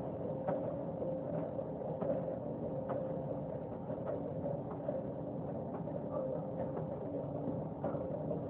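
NuWave countertop oven running: its fan makes a steady hum with a single held tone, with a few faint clicks scattered through.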